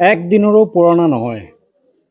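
A man's voice speaking briefly in the first second and a half, the narrator's speech, then it stops.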